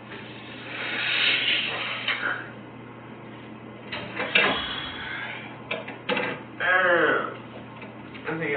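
A man's wordless voice: a long breathy sigh about a second in and a drawn-out groan with wavering pitch near the end, with a few short clicks between.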